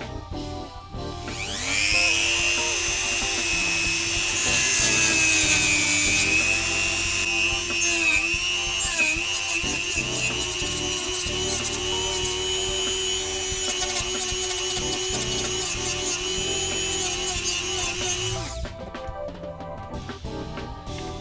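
Rotary tool (mini grinder) with a cut-off disc starting up about a second in and cutting through the plastic housing of a notebook blower fan: a steady high whine that sags in pitch as the disc bites. It stops near the end.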